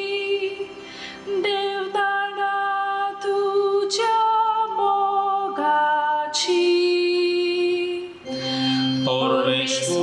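A woman sings a Konkani psalm solo into a microphone, holding long notes one after another. A low sustained note sounds beneath her voice early on, and another comes in near the end.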